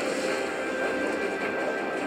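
Medusa Unleashed slot machine playing its bonus-round game sounds: a steady electronic drone of held tones with no distinct hits. It plays as new symbols lock in and the free-respin counter resets to six.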